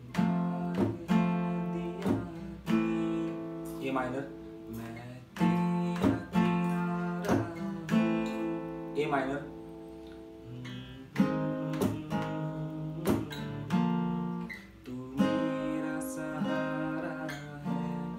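Steel-string acoustic guitar strummed through F major and A minor chords in a strumming pattern, with the weight of the strokes on three or four strings. Each stroke rings on until the next one.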